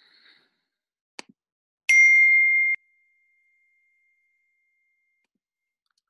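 A single electronic ding, a steady high tone lasting just under a second that cuts off sharply and leaves a faint fading trace, preceded by a soft click.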